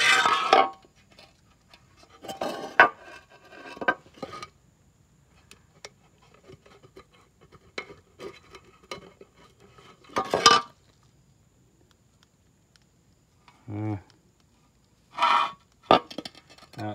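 Knocks and clinks of a rusty steel final drive cover being handled and turned over, its gasket rubbing. The knocks are scattered, the loudest at the start and about ten seconds in, with faint ticks between.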